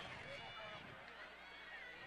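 Faint distant talking over a low steady hum, with no commentary close to the microphone.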